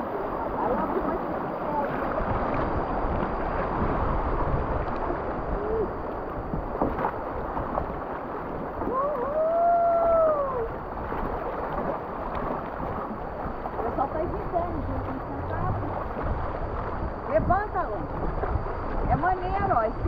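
Fast, muddy river water rushing steadily past a bamboo raft, with scattered short voices over it and one long call that rises and falls about halfway through.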